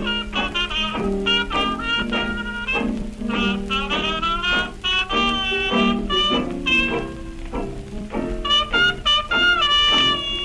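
1920s small-band jazz playing from a 78 rpm shellac record: clarinet and cornet over piano, banjo and washboard. The horn lines bend and waver in pitch.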